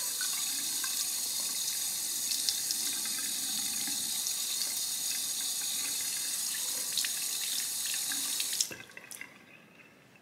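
Bathroom faucet running in a steady stream while a makeup brush's bristles are rinsed under it. The water is shut off about nine seconds in.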